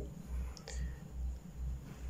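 Faint marker strokes on a glass lightboard as a formula is written, with a brief light squeak about two-thirds of a second in, over a low pulsing hum.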